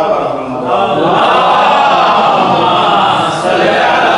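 Congregation of men reciting salawat in unison, the blessing on Muhammad and his family. It is a dense chorus of many voices that swells in under a second in and carries on.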